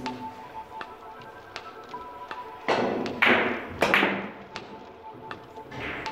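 A Russian billiards shot: three loud knocks about half a second apart as the cue strikes the ball and the large, heavy balls collide.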